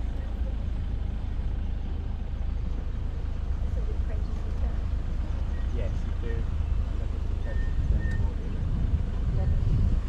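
Open game-drive vehicle driving slowly along a dirt track: a steady low engine and road rumble.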